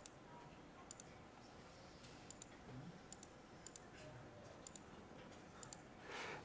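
Faint clicks from a laptop being worked, mostly in quick pairs, about once a second, over near-silent room tone.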